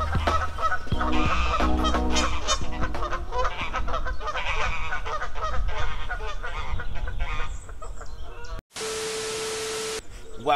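Geese honking repeatedly in a busy string of calls, over the tail of background music. Near the end the calls cut off and give way to a steady hum with hiss.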